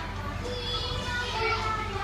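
Children's voices and play noise over music playing in the room.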